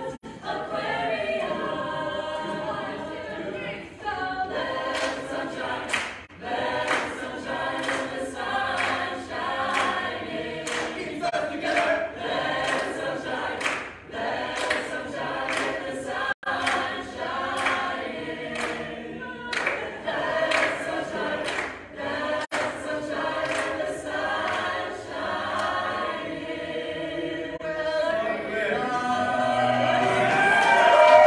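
Mixed men's and women's a cappella group singing in close harmony, with vocal percussion keeping a steady beat of about two hits a second.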